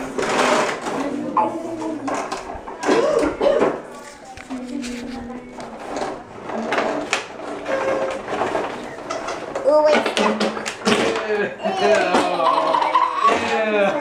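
Indistinct talk from adults and children in a small room, with a few sharp clicks.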